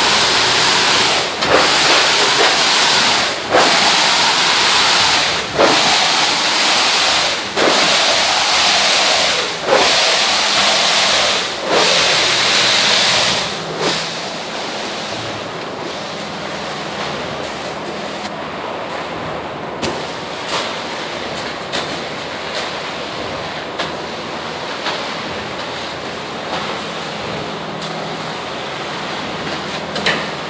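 Concrete pump pushing concrete through the hose: a loud steady rush broken by a short knock about every two seconds, in the rhythm of the pump's stroke changes. After about 14 seconds it eases into a quieter rush with only occasional knocks.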